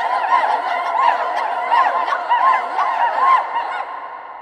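Children's choir making many overlapping short vocal swoops that rise and fall, a laugh-like sound effect in a contemporary choral piece. The voices stop at the very end, leaving the church's reverberation.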